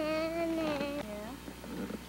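A person's drawn-out vocal call: one held note of about a second, dipping slightly in pitch, ending in a short rising tail.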